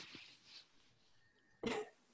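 A person's single short cough near the end, after a little faint breathy noise.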